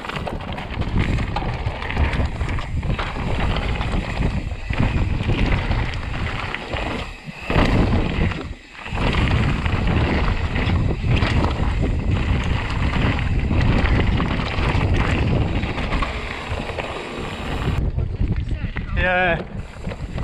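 Mountain bike descending rocky, gravelly singletrack: tyres rattling over loose stones and wind buffeting the camera microphone, in continuous noise that surges and briefly dips about seven and eight seconds in. Near the end comes a brief wavering tone.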